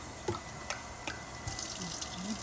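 Kitchen faucet running steadily into a stainless steel sink, with a few faint clicks in the first second or so.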